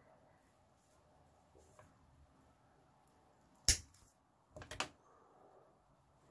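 Wire cutters snipping through the thick copper pin wire: one sharp snap a little past halfway, followed by a few lighter clicks. The cut trims the pin's end at an angle to form its point.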